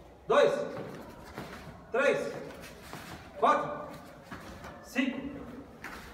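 A man's voice calling out short counts, four calls about a second and a half apart.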